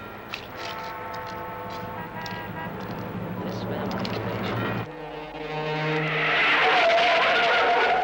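A car running, mixed with film music. About five seconds in, the sound cuts to a louder, rising rush of noise with a wavering tone in it.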